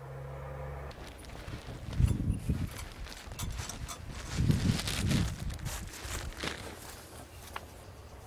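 Footsteps and rustling on dry leaf litter, with a few dull low thumps about two seconds in and again around four and a half to five seconds. A steady low hum is heard for the first second.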